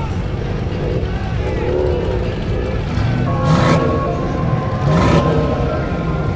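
Modified car engines rumbling, with two sharp revs that rise in pitch about three and a half and five seconds in. Voices and music are faintly audible underneath.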